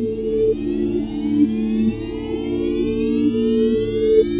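Electronic music build-up: several held synthesizer notes overlap and change, under a sweep that rises slowly in pitch, with a soft pulsing bass beneath.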